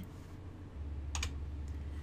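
A single sharp computer click about a second in, then a fainter tick, over a low steady hum.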